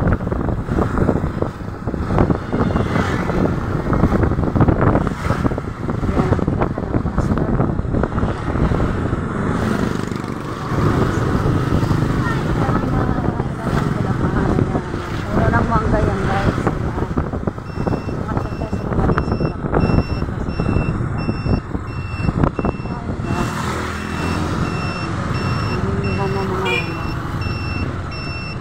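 Steady engine and road rumble from a moving vehicle, heard from on board. About two-thirds of the way in, a high, rapidly repeating electronic beep starts and keeps going.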